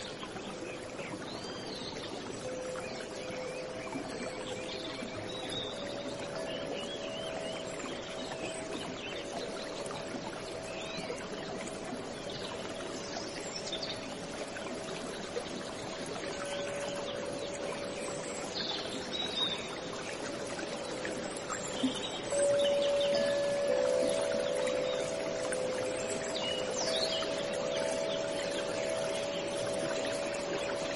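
Steady running water with scattered bird chirps, under soft sustained music notes that grow a little louder near the end.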